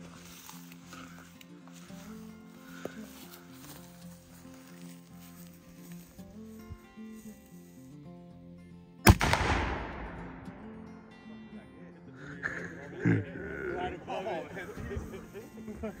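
Small black-powder cannon firing once, about nine seconds in: a single sharp blast with a tail that fades over about a second. Background music runs underneath, and laughter follows the shot.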